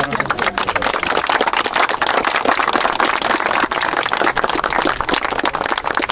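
A group of people applauding, a dense, steady patter of hand claps.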